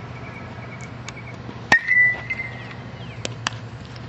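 A bat hitting a baseball in infield practice: one sharp crack about two seconds in with a brief ringing ping after it, then a couple of fainter clicks.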